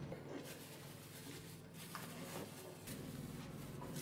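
Faint rustling and handling of a plastic bag as bread is packed into it, with a few soft crinkles over low room hum.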